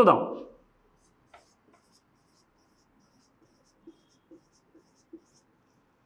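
Marker pen writing on a whiteboard: a handful of short, faint squeaks and taps as digits are drawn, spread through the seconds after a single spoken word.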